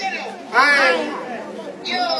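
Speech only: a voice speaking about half a second in, over chatter from the crowd, with no words made out.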